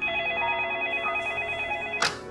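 Telephone ringing with a rapid electronic warble, two notes alternating quickly, in one continuous ring that starts suddenly and cuts off at the end as the handset is picked up.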